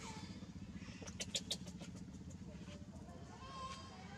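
Motorcycle engine idling steadily, with a quick cluster of sharp clicks about a second in and a brief high squeak near the end.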